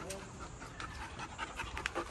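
A dog panting, with scattered short clicks.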